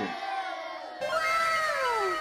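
Outro sound effect: a pitched tone falls in pitch and repeats as fading echoes about every half second, starting about a second in, after the tail of the preceding music dies away.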